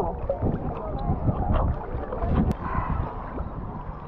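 Sea water sloshing and gurgling around a camera held at the water's surface, over a steady low rumble. A single sharp click about two and a half seconds in.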